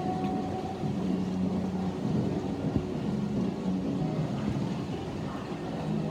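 Echoing indoor-pool din: swimmers kicking and splashing, over a steady low rumble with indistinct low pitched sounds coming and going.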